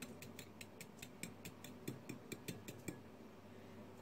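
A fork beating eggs and milk in a small bowl, ticking quickly and evenly against the bowl's side. The ticking is faint and stops about three seconds in.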